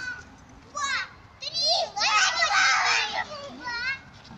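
Young children's excited high-pitched cries and shrieks as they come down a playground slide: a couple of short calls about a second in, then a loud stretch of overlapping shrieks in the second half, and one last call near the end.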